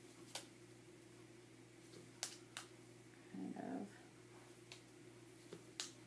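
Photos and paper being handled and pressed onto a scrapbook page, heard as a handful of light taps and clicks. About halfway through there is one short, low voiced sound lasting about half a second. A steady electrical hum runs underneath.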